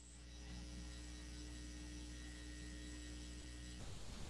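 Steady electrical mains hum, a low drone with a stack of higher buzzing overtones, that cuts off suddenly just before the end.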